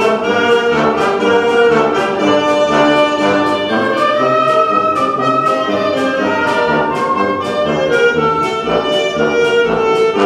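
Wind band of trumpets, trombones, saxophones, clarinets and tuba playing a piece together in sustained chords, with a drum keeping a steady beat about twice a second.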